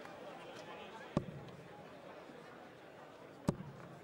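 Steel-tip darts striking a bristle dartboard: two sharp hits a little over two seconds apart, over the faint hum of a large hall with a crowd.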